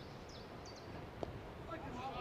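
A single sharp knock of a cricket bat hitting the ball, a little over a second in, over faint outdoor ambience with a few short bird chirps.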